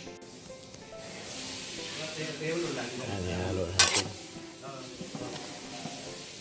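Metal spoon stirring chopped tomato, onion and radish in a rice cooker's inner pot, with one sharp clink of the spoon on the pot about four seconds in, under background music.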